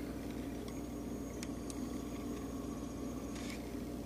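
Steady low background hum with a few faint clicks.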